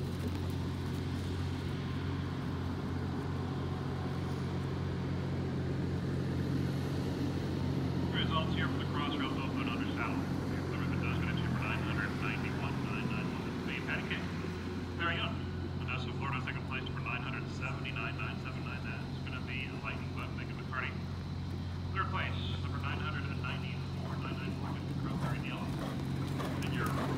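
A steady low mechanical hum, like a running engine, throughout. Unclear voices come and go in the middle part.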